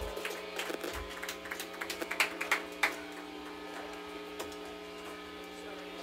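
Steady electrical hum and buzz from the band's amplifiers and PA idling between songs, with scattered clicks and knocks in the first few seconds.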